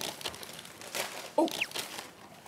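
Plastic wrap and takeout bowls crinkling and clicking as they are peeled open and handled, with a short "eo" from a voice about one and a half seconds in.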